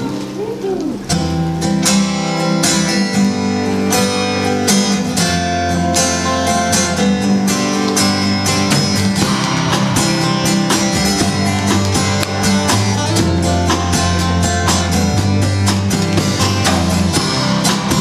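Several acoustic guitars strumming an instrumental introduction in a steady rhythm, with sustained low notes underneath; the playing starts about a second in.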